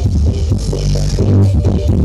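Electronic DJ music played loud through a large outdoor sound system with four subwoofers, the deep bass strongest, with a steady rhythmic beat.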